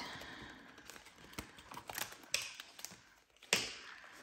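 Quiet handling of a clear vinyl zip pouch and a ring binder: soft plastic rustling and light taps, then one sharp click about three and a half seconds in as the binder's metal rings are snapped open.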